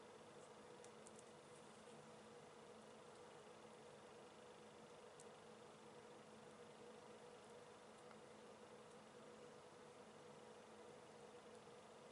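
Near silence: steady faint room hiss with a low hum and a few tiny ticks.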